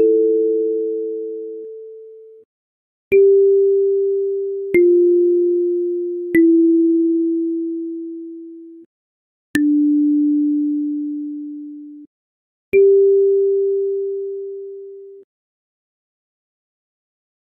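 A slow kalimba melody played one note at a time: A4, G4, F4, E4, D4, then G4. Each tine is plucked with a small click and rings out as a clear, pure tone that fades away over about two seconds.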